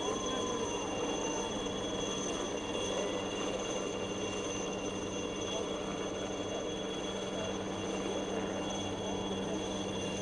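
Helicopter hovering low, a steady high turbine whine over rotor noise, with crowd voices mixed in.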